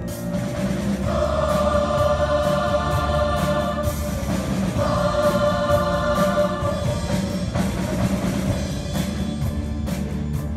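Large mixed choir singing two long held notes, each about three seconds, over a low instrumental accompaniment.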